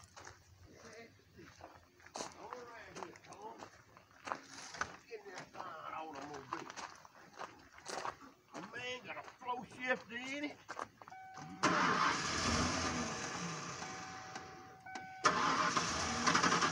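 A Ford F-150 pickup's engine starting about three-quarters of the way in and running loudly, with a thin steady tone over it, then picking up again just before the end. Indistinct talk comes before it.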